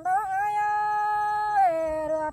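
A woman singing one long held note in a Tây Bắc Thái folk courtship duet: she rises into it, holds it steady, then slides down near the end.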